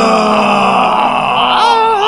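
A man's long, drawn-out wail of agony, held as one loud call whose pitch slowly falls, starting to waver near the end.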